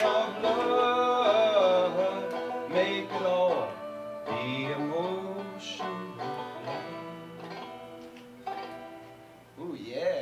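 A small acoustic folk ensemble finishing a song: several voices singing together over banjo and bowed strings, the last held notes dying away near the end.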